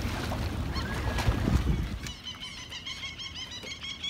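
Wind and boat noise on the microphone, then, about two seconds in, a chorus of short, rapidly repeated bird calls.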